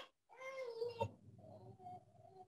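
A faint, high, drawn-out call that wavers in pitch, followed about half way through by a second, steadier call that fades near the end.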